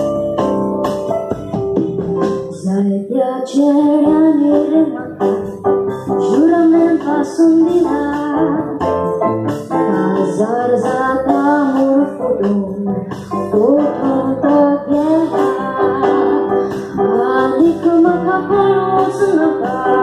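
A woman singing a Konkani song live into a microphone over band accompaniment with keyboard. The keyboard plays alone for the first few seconds before her voice comes in.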